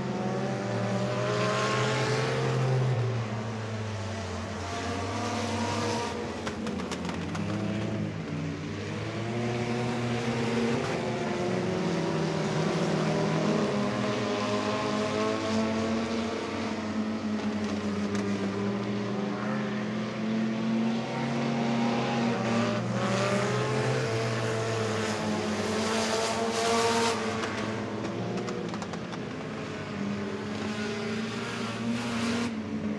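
Engines of compact sedan race cars running laps on a dirt oval, their notes rising and falling as the drivers accelerate down the straights and lift for the turns.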